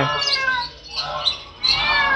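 A caged bird calling twice: two calls that slide down in pitch, one at the start and another about one and a half seconds in.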